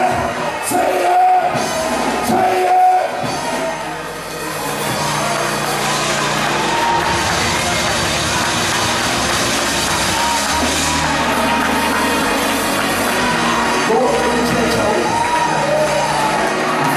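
Gospel worship music: a choir and congregation singing over steady instrumental backing with a sustained bass, with shouts and cheers from the crowd.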